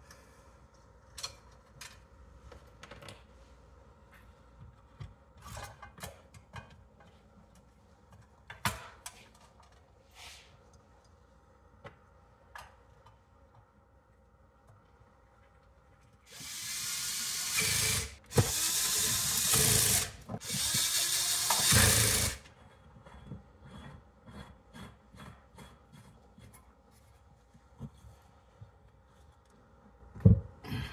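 Cordless power drill/driver run in three steady bursts of about two seconds each, a little past halfway, fastening parts onto a Briggs & Stratton vertical-shaft engine. Around them, light clinks and rubbing of tools and parts being handled.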